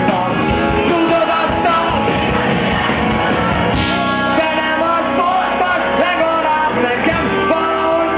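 Live alternative rock band playing loudly: electric guitars, bass guitar and drum kit, with the lead singer singing into the microphone.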